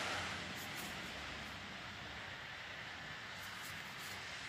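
Faint steady background hiss of room tone, with no distinct sound standing out.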